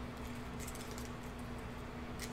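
Quiet room tone with a steady low hum and a few faint soft clicks from trading cards being handled and turned over.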